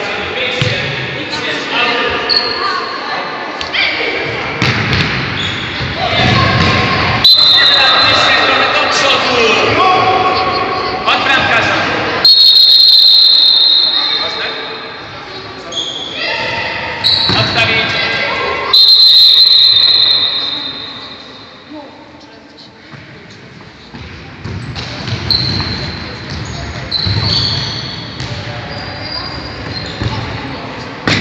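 Indoor youth football game in a sports hall: the ball being kicked and bouncing on the wooden floor, with players shouting, all echoing in the hall. Several loud, high-pitched sounds lasting a second or two stand out between about seven and twenty seconds in.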